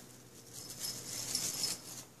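A kitten batting at and grabbing a cat toy made from a plastic hula lei with toys tied to it, giving a soft, high jingling rattle from about half a second in until near the end.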